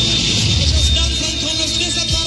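Live stadium concert heard from among the audience: the band's music under crowd noise, with a heavy low rumble and voices gliding in pitch.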